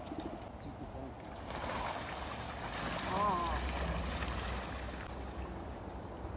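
Eastern spot-billed duck bathing in a shallow stream, splashing the water with its wings and body. The splashing swells about a second and a half in and fades near the end, with a brief voice-like sound at about three seconds.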